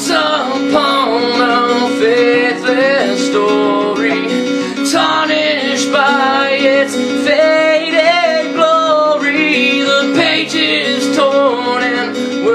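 Male voice singing a slow melody over a strummed acoustic guitar.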